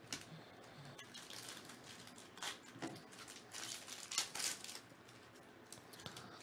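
Trading cards and a foil pack wrapper being handled, giving a run of short, dry rustles and crinkles, the loudest about four seconds in.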